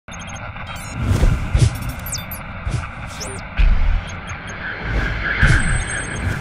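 Channel-logo intro sting: designed sound effects of whooshes and short high sweeps over a music bed, punctuated by several deep booms.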